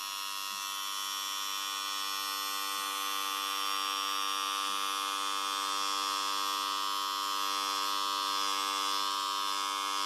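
Electric hair clipper running with a steady buzz, growing slowly louder.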